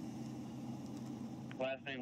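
A car engine idling nearby with a steady low hum; a man's voice begins near the end.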